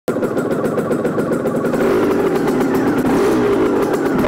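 Small 50cc motorcycle engine running steadily at idle.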